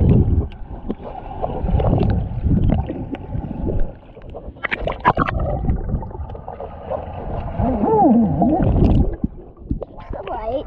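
Water in a hot tub heard from a camera held underwater: a muffled low rumbling and gurgling of moving water and bubbles. A sharper splash comes about five seconds in, and a muffled wavering voice shortly before the camera surfaces near the end.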